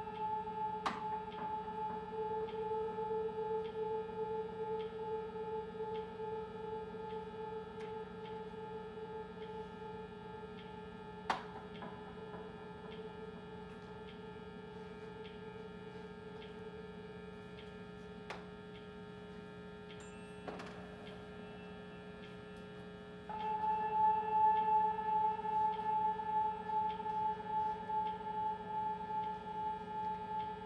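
Experimental electronic drone: steady held tones with many overtones, broken by a few faint clicks. About three-quarters of the way through, a brighter upper tone comes in and the drone gets louder.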